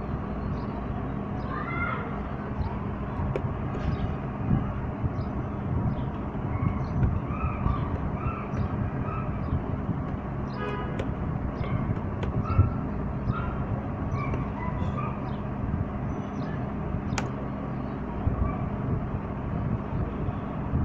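Laptop keyboard keys tapped now and then, faint clicks over a steady low rumble and hum of background noise, with one sharper click about 17 seconds in.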